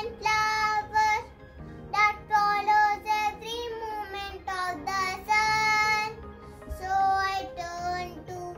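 A young boy singing a prayer, in held notes grouped into short phrases with brief breaks between them.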